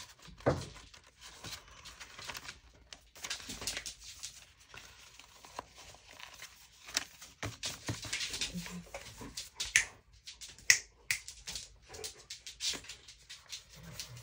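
Sheets of paper and cardstock being handled and shuffled on a craft table: intermittent rustling, sliding and soft taps, with a sharper crisp crackle about eleven seconds in.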